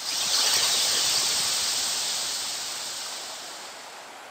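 Steam hissing from water splashed onto the heated stones of a temazcal steam bath, loudest at the start and slowly dying away.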